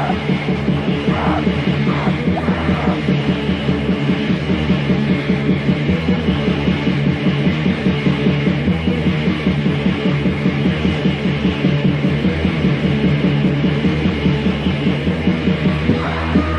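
Raw, lo-fi black metal from a 1994 demo tape: dense distorted guitar over a fast, steady beat, with a harsh shouted vocal briefly in the first few seconds.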